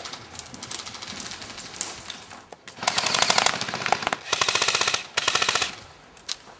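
Airsoft rifles firing on full auto: faint rapid fire at first, then three loud bursts of fast, evenly spaced shots in the second half.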